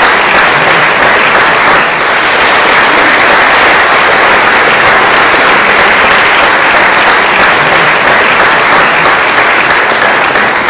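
Audience applauding: many people clapping at once in a dense, steady wash of claps that thins a little near the end.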